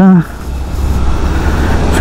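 Motorcycle riding noise on a helmet microphone: a steady low engine rumble under a rush of wind, slowly getting louder toward the end.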